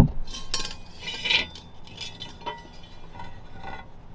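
Metal clinking and rattling as a flat aluminium brace plate and hand tools are handled under a car during an exhaust mid-pipe install. There is one sharp clink at the very start, then a scatter of lighter clinks with brief ringing.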